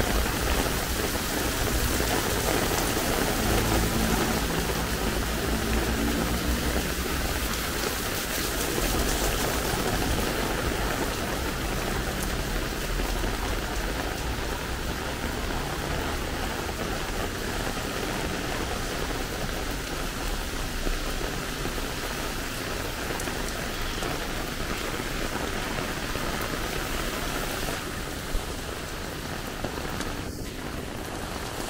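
Heavy rain pouring onto a paved city street and pavement, a dense, steady hiss of drops splashing on wet stone and asphalt, easing slightly near the end.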